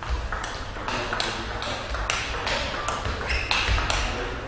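Table tennis rally: the ball clicking sharply off the rackets and the table in quick succession, about two to three hits a second, each hit ringing briefly in the hall.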